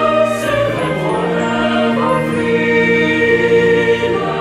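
Choir singing a hymn in long held chords over an orchestral accompaniment, moving to a new chord about a second in.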